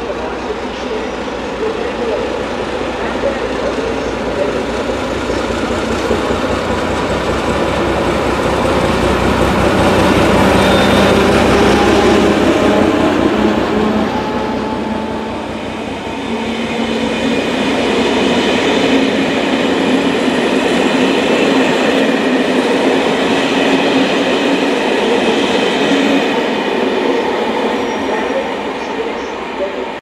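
Czech class 749 'Bardotka' diesel-electric locomotive passing with an express train, its diesel engine growing loud to a peak about ten to twelve seconds in. The coaches then roll by with wheel clatter and several high ringing tones, fading near the end.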